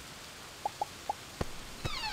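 Three water drips plinking in quick succession, each a short note bending upward in pitch, followed by two sharp clicks near the end.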